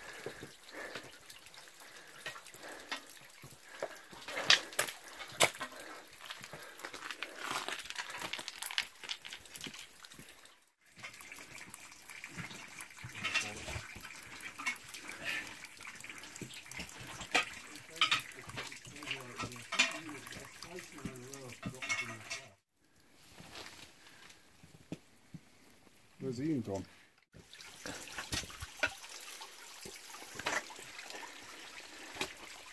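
Meltwater dripping and trickling inside a snow tunnel, with the hiss of running water under the snow. Over it come scattered clicks and scrapes of boots and ice axes on wet rock as people scramble through.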